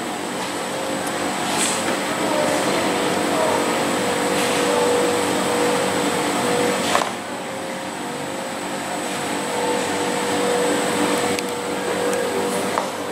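Steady mechanical background noise with a constant low hum and a thin high tone, like a running ventilation or air-conditioning unit. A sharp tap sounds about seven seconds in, and a lighter one near the end.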